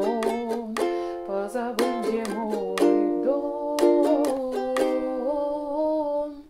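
Ukulele strummed in a down, down-up-down-up pattern through Em, D, G and Am chords, with a woman singing the melody over it. The phrase ends about five seconds in on a single down-strum of Am, left to ring.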